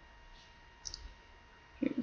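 Quiet room tone with a faint steady hum, broken just before a second in by a couple of quick, sharp little clicks; a voice starts right at the end.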